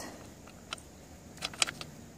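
Faint handling sounds: a few light clicks against a quiet background, one just under a second in and a couple close together around a second and a half in.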